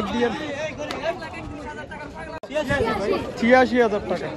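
Men's voices talking and calling over one another in busy outdoor chatter, with a brief break about halfway through.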